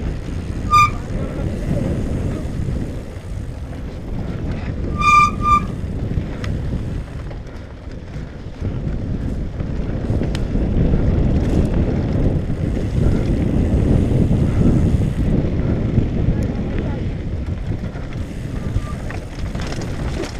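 Wind buffeting a helmet-mounted camera microphone and tyres rumbling over a dirt trail on a mountain bike descent. Short, high squeals of the disc brakes come about a second in and as a quick cluster of chirps around five seconds in.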